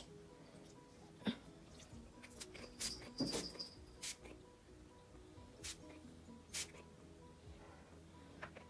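Several short hissing spritzes from a pump-action room and linen spray bottle misting a bed, over faint background music.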